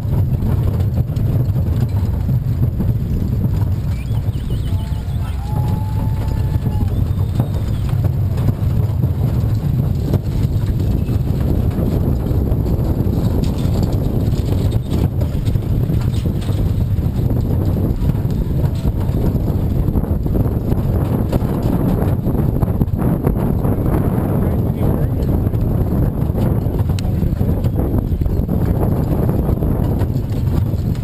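A horse team pulling a racing wagon, with hooves clip-clopping over a steady low rumble and rattle from the wagon. It is heard close up from a microphone mounted on the wagon.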